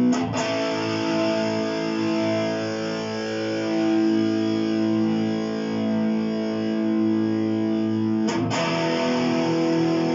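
Epiphone Les Paul Prophecy electric guitar played through a Boss DS-1X distortion pedal and a Fender Blues Junior amp. A distorted chord is struck at the start and left to ring for about eight seconds, then a second chord is struck near the end and held, showing off the guitar's sustain.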